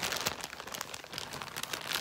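Clear plastic zip-top bag full of embroidery floss skeins crinkling as it is handled, an irregular run of small crackles.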